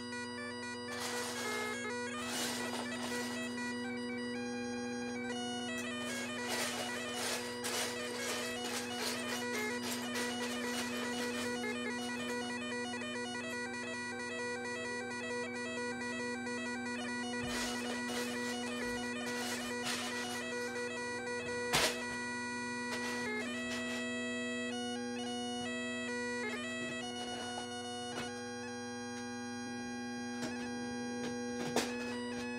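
Bagpipes playing a tune over a steady, unbroken drone, with a single sharp click about two-thirds of the way through.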